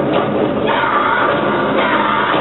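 Loud stage music with drumming from a troupe of drummers beating a row of drums in unison.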